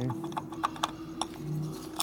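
A string of light, irregular metallic clicks as the front piston of a 1964 Harley-Davidson Sportster ironhead engine is rocked by hand on its connecting rod. The clacking comes from excessive play in the rod, which is very loose. A faint steady hum runs underneath.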